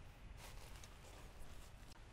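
Near silence, with a few faint footsteps on dry leaf litter.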